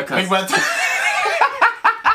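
Two men laughing hard: a high, wavering laugh, then a run of short laughing bursts near the end.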